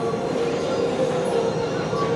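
N700-series Shinkansen running past on an elevated viaduct: a steady running noise of the train.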